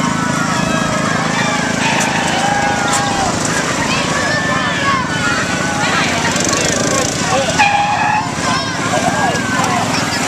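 Small engines of decorated parade go-karts and a four-wheeler running steadily as they drive past, under a crowd of spectators calling and shouting, with one loud held call about eight seconds in.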